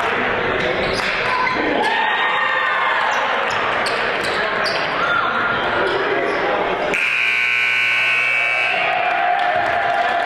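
Gym basketball game noise, with a ball bouncing, short sneaker squeaks and crowd voices. About seven seconds in, the scoreboard buzzer sounds one steady tone for about two seconds.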